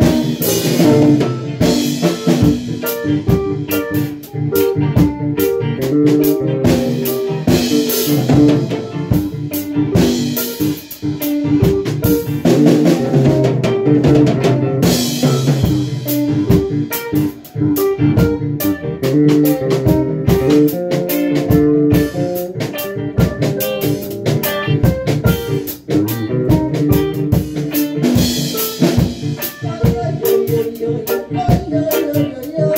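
A reggae band playing live: drum kit, electric guitar and synthesizer keyboard together in a steady groove.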